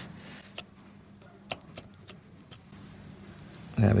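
Scissors cutting through a preserved rat's neck to decapitate it: a few faint, sharp snipping clicks spread through a quiet stretch, the loudest about a second and a half in.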